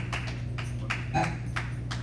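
A steady low electrical hum from the amplified sound system, with a few faint clicks and a short murmur about a second in.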